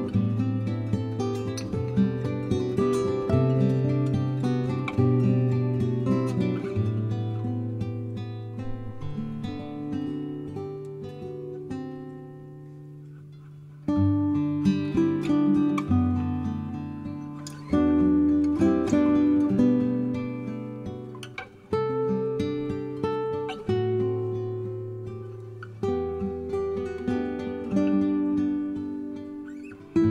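Background music on acoustic guitar: plucked and strummed notes in phrases, fading down about halfway through before a new phrase comes in loudly.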